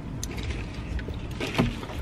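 Low steady rumble inside a car cabin, with a few short clicks and rustles as the driver's seatbelt is unbuckled and let go, the sharpest click about one and a half seconds in.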